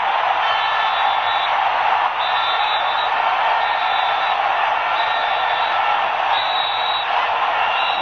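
Stadium crowd noise at a football match, a steady even roar with short steady tones sounding on and off above it.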